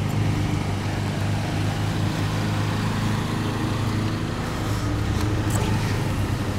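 Steady low hum of an idling vehicle engine, with outdoor street noise.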